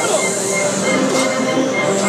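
A wind band holds the sustained notes of a slow processional march, with the chatter of a large crowd under it.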